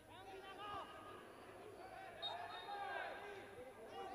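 Faint field-level sound of a football match in play: distant players calling out over a low steady background.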